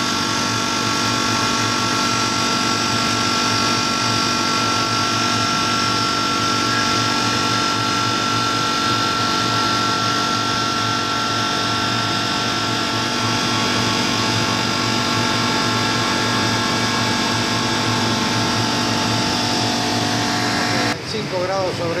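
7 HP semi-hermetic refrigeration compressor of a walk-in cold room running steadily: an even machine hum with several constant tones. It cuts off suddenly near the end.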